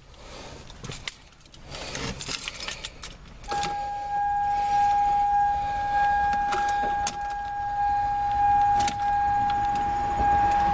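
Ignition keys jangling as the key is put into the ignition and turned to on. About three and a half seconds in, a steady electronic warning tone from the vehicle starts and keeps sounding.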